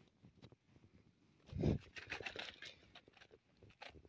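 Faint clicks and scrapes of small beach pebbles shifting as stones are moved, with a brief low thump about one and a half seconds in.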